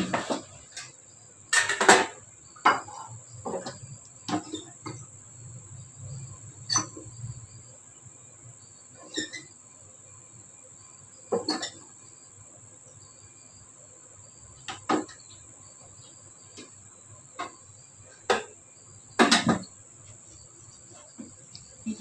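Rice being dished from a rice cooker onto a ceramic plate: scattered knocks, clinks and scrapes of the cooker lid, the rice paddle and the plate, loudest at the start, about two seconds in and near the end. A steady high-pitched tone sits underneath.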